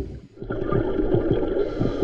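Muffled underwater sound of water moving and bubbling, picked up by an underwater camera, mostly low and dull with soft irregular pops.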